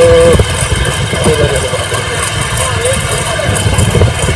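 Honda SP125 motorcycle's single-cylinder four-stroke engine running steadily while riding at about 32 km/h, heavy with wind rumble on the phone microphone. A brief steady tone sounds right at the start.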